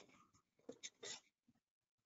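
Near silence, broken by a few faint, very short sounds about a second in.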